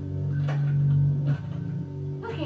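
Background music from a cartoon soundtrack: a long held low note with a couple of short, sharp sounds over it.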